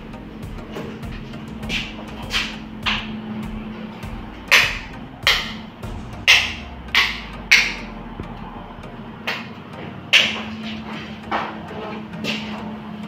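About a dozen sharp knocks at uneven intervals, each with a short ringing tail, over a steady low hum.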